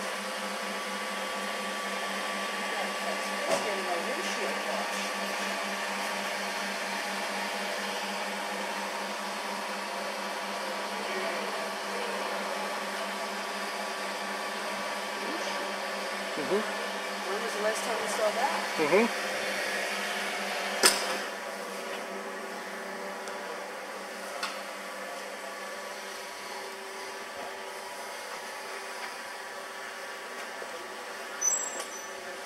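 Steady mechanical hum of a petrol-station fuel dispenser pumping petrol. A sharp click comes about two-thirds of the way in, and the hum is a little lower after it.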